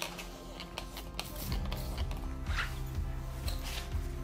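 Background music, with a paper towel rubbed over a sanded epoxy tabletop in a couple of short swipes, wiping it clean with isopropyl alcohol before the clear coat.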